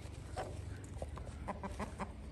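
Kandhari game fowl giving a few short, quiet clucks.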